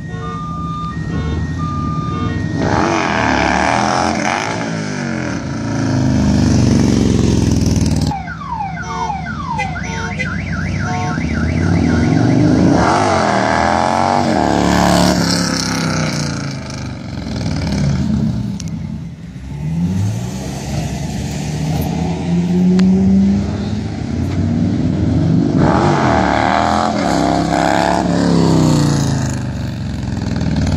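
Harley-Davidson V-twin motorcycle engine revved hard in repeated surges, pitch sweeping up and down as the bike accelerates and backs off during wheelies. A car alarm beeps and chirps underneath in the first seconds and again briefly near the middle.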